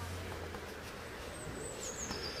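Quiet background noise with no distinct event. A low hum stops about half a second in.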